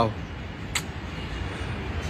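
Steady distant city traffic hum heard from high above the streets, with one short click about three quarters of a second in.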